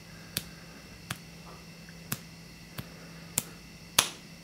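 Fingertip flicks striking the head of a wooden match coated with toy cap-gun cap powder: about six short, sharp clicks, spaced unevenly every half second to a second, the last the loudest.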